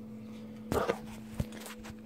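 Handling noise from a phone being picked up off a kitchen counter: a brief rustle, then a single sharp knock and a few small clicks, over a steady low electrical hum.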